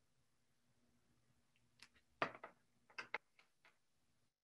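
A few short, sharp clicks and taps about two seconds in, the loudest first, from a pair of eyeglasses being handled and set down; otherwise near silence with faint room hiss.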